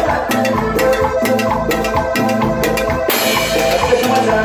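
Live tropical dance music (sampuesana) from a keyboard band: sustained keyboard notes over a steady, even drum-kit and percussion beat. A bright, hissy wash of high sound comes in about three seconds in.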